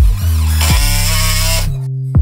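Electronic background music with a steady kick about once a second. Over it, for about a second and a half, a Makita cordless impact driver runs, driving a screw into a plywood panel, and cuts off suddenly.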